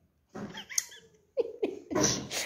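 A toddler's wordless voice sounds: short high, gliding squeals, then louder vocalising near the end.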